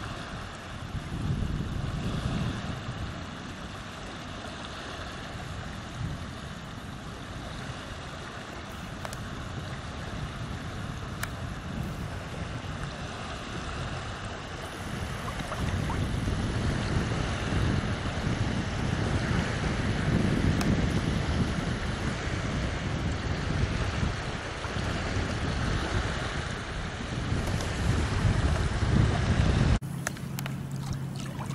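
Wind buffeting the microphone over small waves washing in shallow seawater at a sandy shore. The sound grows louder about halfway through.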